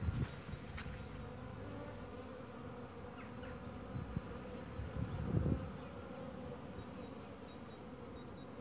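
Honeybees flying around the hive entrances, a steady buzz from many bees at once; the beekeeper calls these overwintered colonies healthy. A short low bump comes about five seconds in.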